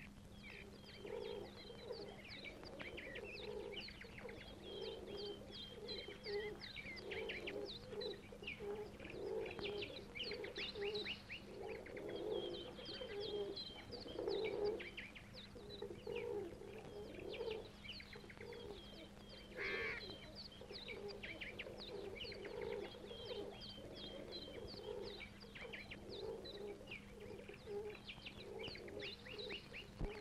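Bird ambience: rapid, repeated chirping of small birds over a low, repeating cooing like doves, with a steady low hum beneath.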